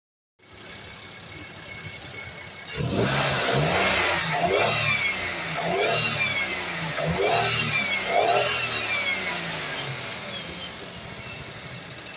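Maruti Suzuki Wagon R petrol engine running under the hood: steady idle at first, then revved up and down in repeated blips about once a second, each with a whine rising and falling in pitch, before settling back toward idle near the end.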